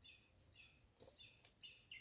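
Near silence with several faint, short bird chirps repeating through the pause.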